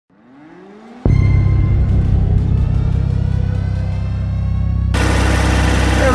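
An intro music sting: a rising sweep, then a sudden hit about a second in that holds a sustained chord with a steady ticking beat, over a steady low engine hum. About five seconds in it cuts to live sound of a small tractor's engine idling.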